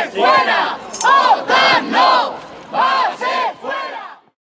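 Protesters chanting a slogan in unison: short, loud shouted syllables, about two a second, in groups with a brief pause between them.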